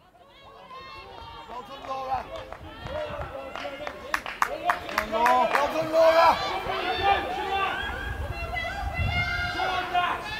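Indistinct shouting and calling from several voices on and around a football pitch, growing louder over the first few seconds. A few short sharp knocks come around the middle.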